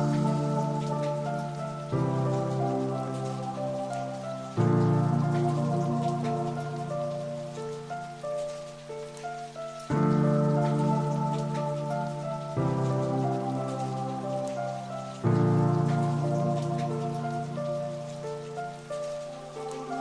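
Slow ambient background music: sustained keyboard chords, each struck and left to fade, a new one coming every two to five seconds, over a faint crackling hiss.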